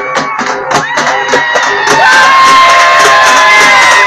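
Street procession band playing: drums beating about four times a second, with a held melody line coming in about a second in, and a crowd cheering and shouting over it, growing louder about halfway through.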